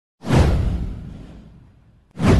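A swoosh sound effect for an animated intro. It starts suddenly a fraction of a second in with a deep low end, sweeps downward in pitch and fades away over about a second and a half.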